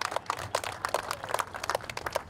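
Audience applause: a crowd clapping, a dense, irregular run of hand claps.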